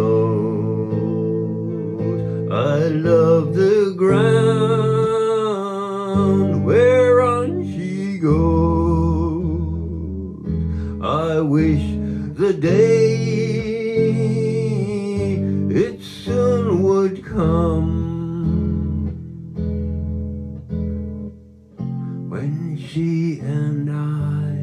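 Slow folk ballad played on an electric guitar: steady low notes beneath a wavering melody line that swells and fades in phrases of a few seconds, without sung words.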